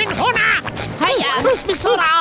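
Cartoon soundtrack: a run of short pitched sounds, each rising and falling in pitch, over background music.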